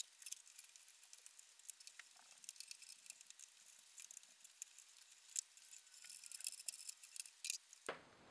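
Faint, scattered light clicks and taps of small hardware being handled, such as screws and case parts, with denser clusters a third of the way in and near the end.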